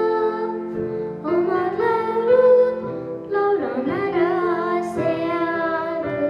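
A young girl singing a slow melody into a microphone over instrumental accompaniment, holding long notes with short breaths between phrases and a wavering vibrato on a note near the middle.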